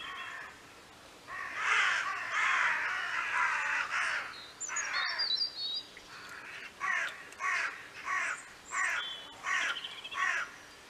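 Crows cawing: a dense run of overlapping harsh calls, then a steady series of single caws about every two-thirds of a second toward the end, with a small bird's high chirps in between.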